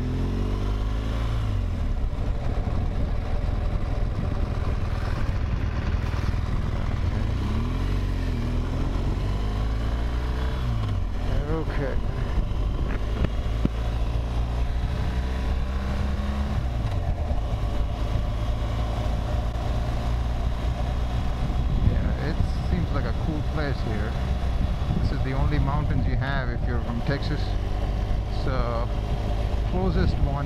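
BMW R1200 GSA boxer-twin motorcycle engine running under way, its pitch rising and falling with throttle and gear changes, over steady wind and road noise.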